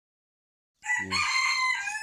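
A rooster crowing: one long call beginning just under a second in, holding its pitch and then falling away near the end.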